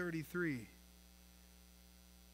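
Faint steady electrical mains hum with its overtones, left alone after a man's voice stops about half a second in.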